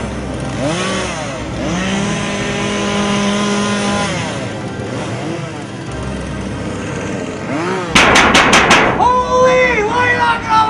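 A chainsaw engine revving up and down over and over, dropping back between revs. About two seconds before the end comes a rapid run of five sharp bangs, and the engine then revs higher.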